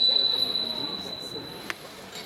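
A high, steady electronic tone from the projection show's sound system, loud at first and fading away over about a second and a half, with one sharp click near the end; low crowd chatter underneath.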